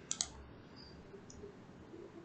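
A computer mouse button clicked: two quick sharp ticks close together just after the start, choosing an item from a right-click menu.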